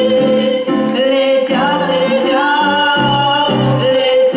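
A young woman and a boy singing a duet over digital piano accompaniment, with a long held note running beneath the changing chords.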